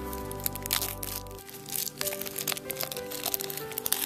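Crinkling and crackling of the plastic shrink wrap on a deck of cards being peeled off, a run of irregular sharp crackles, over steady background music.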